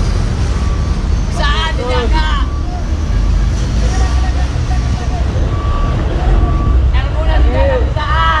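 Heavy diesel engine running with a steady low rumble, while a reversing alarm sounds single beeps on and off. Men's voices call out twice, about a second and a half in and near the end.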